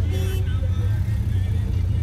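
Steady low rumble of a commuter minibus's engine and road noise, heard from inside the bus in traffic.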